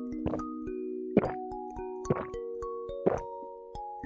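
A person gulping down a drink, one loud swallow about every second, four in all. Background music with slow held chords plays throughout.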